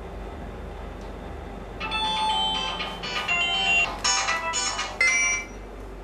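A mobile phone ringtone plays a melody of bright electronic notes, starting about two seconds in and stopping shortly before the end, over a low background hum.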